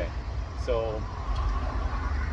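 A car driving past on the street, its tyre and engine noise swelling in the second half, under a man's brief speech.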